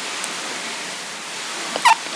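A pause between sentences: a steady hiss of the recording's background noise, with one short sharp mouth sound from the speaker near the end.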